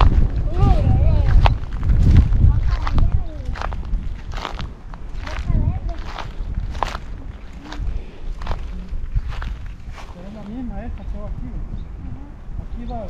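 Footsteps crunching on dry grass and leaf litter at a steady walking pace, about one step every second. Wind buffets the microphone with a low rumble in the first few seconds.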